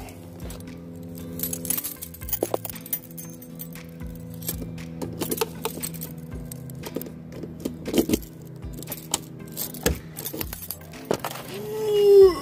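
A bunch of keys jangling and clinking as they are handled, in irregular clicks, over steady background music.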